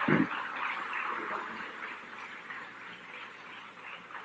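Audience clapping that fades steadily away after a brief voice at the start.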